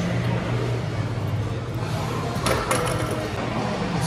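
Gym background: a steady low hum with a few sharp metallic clinks of weights about two and a half seconds in.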